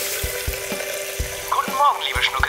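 Kitchen tap running, with water hissing steadily into a steel sink. Music with a steady beat of about four thumps a second plays over it, and a short voice comes in near the end.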